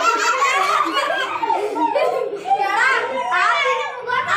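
Several children talking over one another and laughing, high-pitched voices crowding together.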